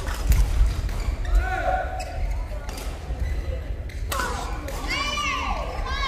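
Badminton rally in a large echoing sports hall: sharp racket strikes on the shuttlecock and footwork on the court, with sneakers squeaking on the floor and voices around the hall.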